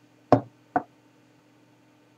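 A glass being set down on a wooden tabletop: two knocks about half a second apart, the first louder.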